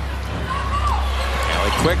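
Arena sound of a women's basketball game: a ball being dribbled on the hardwood court over crowd noise and a steady low hum. A commentator's voice comes in near the end.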